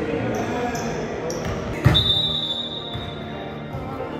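Basketball being played on a hardwood gym court: sneaker squeaks and ball sounds, then a little under two seconds in a sharp bang as a shot strikes the hoop, followed by a high ringing tone that fades over about a second and a half.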